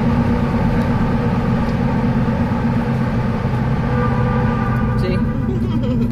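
Steady low road and engine drone of a car being driven, heard from inside the cabin.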